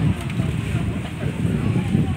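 Indistinct voices of people talking close by, over a dense low rumble on the phone's microphone.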